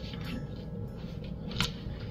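Kitchen knife quietly cutting through a slice of soft white bread on a perforated metal baking tray, with a sharp click about one and a half seconds in.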